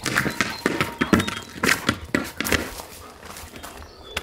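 Dog barking loudly in a quick string of barks over the first two and a half seconds, then easing off.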